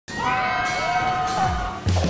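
Several voices holding long high screams or cries at once, sustained and slightly wavering, with a low sweep coming in near the end.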